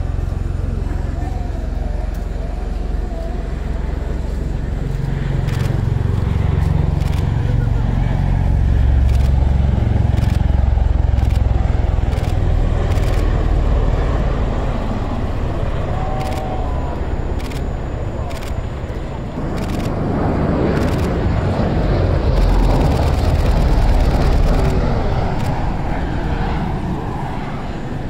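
CV-22 Osprey tiltrotor flying a demonstration pass, its twin turboshaft engines and big proprotors giving a deep, loud rumble that swells twice, in the middle of the stretch and again near the end.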